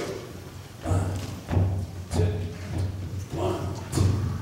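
Student jazz big band playing, with a steady low pulse about every 0.6 s that starts about a second in.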